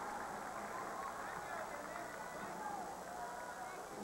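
Crowd noise in an indoor volleyball arena: a steady murmur of many spectators' voices, with faint indistinct calls rising out of it now and then.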